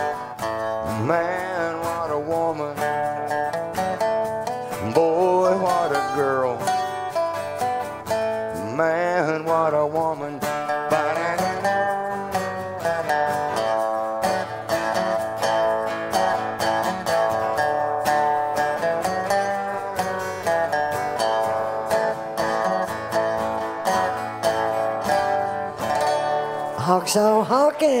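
Acoustic guitars strumming the instrumental close of a country song, with a melody line that slides up and down in pitch a few times in the first ten seconds over steady chords.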